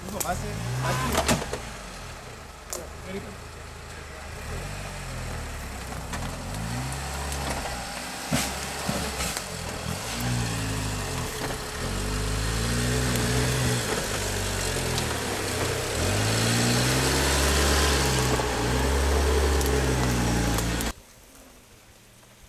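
Jeep Cherokee (XJ) engine revving up and falling back again and again under load as the 4x4 crawls over a steep, rutted off-road bank, with a few sharp knocks from the vehicle striking the ground. The sound cuts off suddenly near the end.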